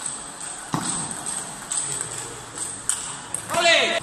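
Table tennis play in a sports hall: one sharp click of the ball about a second in. Near the end comes a short, loud, high-pitched shout that falls in pitch.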